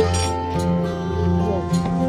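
Background music: a steady low bass note under sustained pitched tones, opening with a sharp clinking hit.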